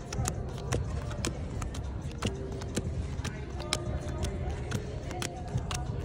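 Playing cards dealt one at a time onto a table, a light tap as each lands, two or three a second, over steady background hubbub and music.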